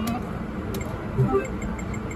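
Video poker machine sounds over steady casino background noise: the tail of a short electronic win tune at the start, then a brief pitched sound about a second in as the next hand is dealt.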